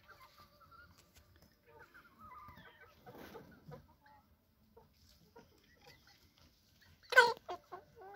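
Chickens clucking softly, with one short loud call about seven seconds in followed by a few quieter ones.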